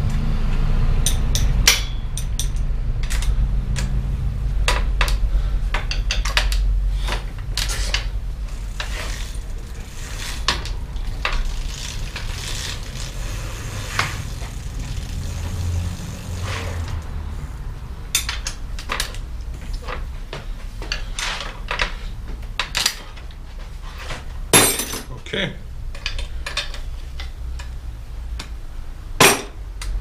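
Scattered metal clinks and rattles of a bicycle chain and tools while a single-speed rear wheel is set back in its dropouts to tension a chain that was too loose, with a low rumble through the first several seconds and two louder knocks near the end.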